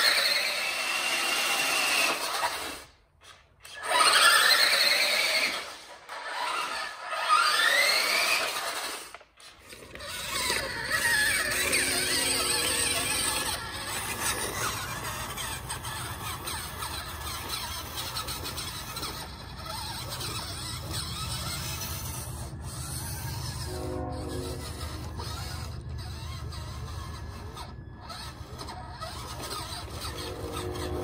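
Electric RC truck (Radio Shack 4x4 Off Roader) accelerating in three short bursts, its motor and gearbox whining up in pitch each time. It is followed by a lower, steadier running sound with scraping as the truck crawls slowly over rocks.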